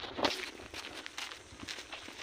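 Footsteps on dry grass and bare soil, an irregular series of light crunching steps, with one louder step or scuff about a quarter second in.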